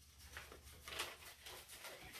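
Faint, irregular rustling and crinkling of construction paper being handled and bent by hand.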